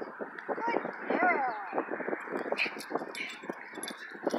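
An indistinct voice without clear words, with scattered short clicks.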